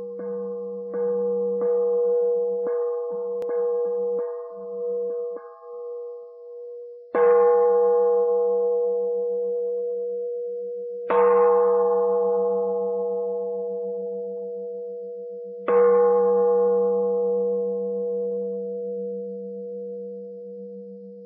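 A bell rung by striking, about ten quick strokes in the first five seconds, then three single loud strikes a few seconds apart. Each strike rings on and dies away slowly.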